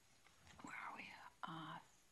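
A person whispering or muttering under their breath, ending in a short spoken syllable near the end.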